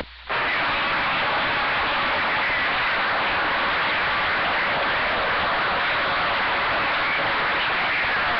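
Steady rushing static from a CB radio's receiver on an open channel with nobody talking, coming in just after a brief silence at the very start.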